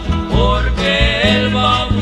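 Acoustic guitar ensemble with bass playing a Christian song: a swaying melody line over steady, rhythmic bass notes and plucked guitar chords.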